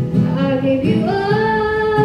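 A woman singing live with her own strummed acoustic guitar; about a second in her voice slides up into a long held note over the steady strumming.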